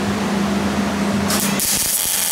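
Wire-feed (MIG) welder arc striking about one and a half seconds in and going on as a steady sizzling hiss, building a weld bead onto a broken-off exhaust manifold stud so it can be gripped and turned out. Before the arc, a steady low hum.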